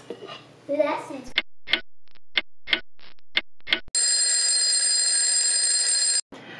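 Clock-ticking sound effect, about eight ticks at roughly three a second, followed by a loud, steady alarm ring lasting about two seconds, used as a time-passing transition.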